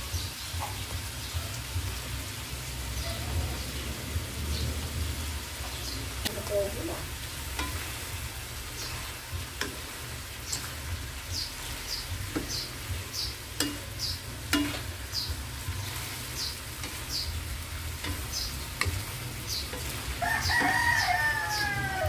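A spatula stirring and tossing mung bean sprouts in a hot wok, with light frying. In the second half the strokes come as regular scrapes about every 0.6 s, over a steady low hum. Near the end a rooster crows.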